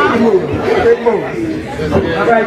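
People talking: a voice at the microphone over chatter, with no music playing.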